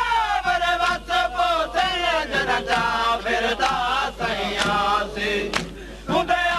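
Male reciter singing a Saraiki noha lament in a wailing chant, with a crowd of mourners joining in. Sharp chest-beating (matam) strikes fall roughly twice a second under the singing, and the voice breaks off briefly near the end.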